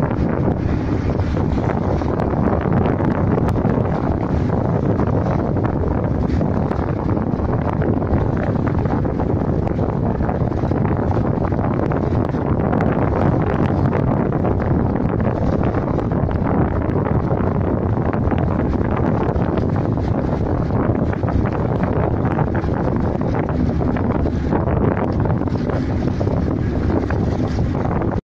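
Steady, loud rumble of a small boat under way on open water, with wind buffeting the microphone throughout.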